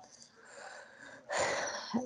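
A person's audible breath: a faint exhale, then a sharper in-breath through the mouth about a second and a half in, just before speech resumes.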